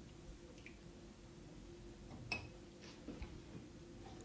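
Faint handling of a small glass bowl on a kitchen counter, with one sharper clink a little past halfway and a couple of small clicks after it, over a faint steady hum.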